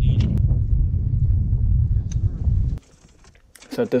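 Wind buffeting the microphone on an open boat deck: a loud, uneven low rumble with a few light clicks, which cuts off suddenly a little under three seconds in. A man's voice begins near the end.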